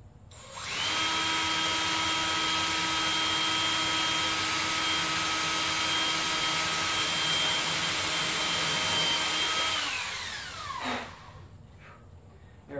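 Handheld power drill running at a steady speed for about nine seconds, boring a hole straight down at the centre mark of a wooden ring. It starts about a second in, and near the end the trigger is released and the motor winds down with a falling whine.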